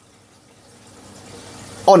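Faint, steady rush and trickle of aquarium water circulating, growing slightly louder, with a short spoken word right at the end.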